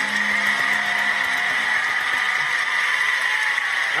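A large audience applauding at the end of a live song, with the last held note of the music dying away in the first second.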